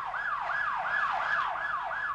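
A siren sounding in quick repeated sweeps, about three a second, each rising sharply in pitch and then sliding down.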